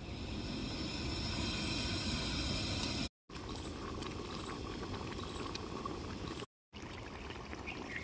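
Stuffed brinjal curry boiling in a large aluminium kadhai over a gas flame turned up high: a steady bubbling hiss. It is broken twice by brief silent gaps.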